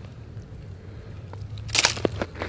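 Fishing line being hand-pulled through a hole in lake ice from a tripped tip-up: a few faint handling clicks over a low steady hum, then one short, sharp crunch near the end.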